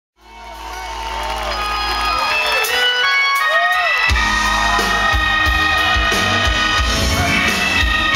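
Live band playing on stage, fading in over the first couple of seconds with held and wavering melodic notes; bass and drums come in about four seconds in.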